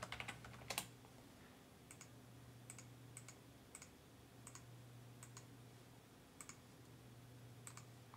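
Faint keystrokes on a computer keyboard in the first second, then scattered single clicks about once a second, over a steady low hum.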